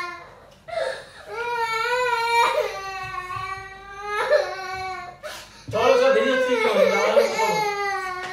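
A young boy crying in a string of long, drawn-out wails, each a second or two long with short breaks between them. The loudest wail comes near the end.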